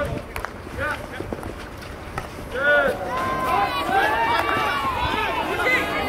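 Field hockey players shouting and calling to each other during play, the calls getting busier from about two and a half seconds in, with a few sharp clacks of stick on ball in the first couple of seconds.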